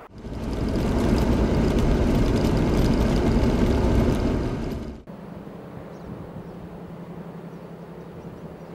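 A vehicle driving on a gravel road, heard from inside: a loud, steady rumble of engine and tyres on gravel. It cuts off abruptly about five seconds in, leaving a much quieter steady hum.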